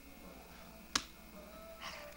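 A single sharp click about a second in, followed by faint rustling near the end.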